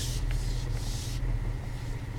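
Range Rover Sport's engine running at low revs, heard from inside the cabin as it crawls over rough off-road ground: a steady low hum, with a faint hiss over it that drops away a little over a second in.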